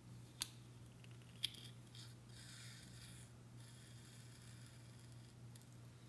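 Two sharp metallic clicks of a surgical needle driver and forceps about a second apart, then a soft rustle as the suture is handled, over a low steady hum.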